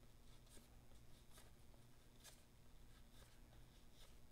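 Near silence with a few faint, soft flicks of cardboard trading cards being slid off a stack one at a time, over a low steady hum.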